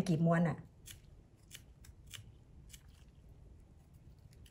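Faint, crisp snicks of a small carving knife cutting into raw turnip flesh as rose petals are carved: several short sharp ticks spread about half a second apart after a brief bit of speech.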